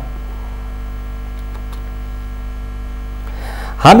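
Steady electrical mains hum, a low unchanging drone with faint higher overtones, filling a gap in the broadcast audio; a man's voice starts just before the end.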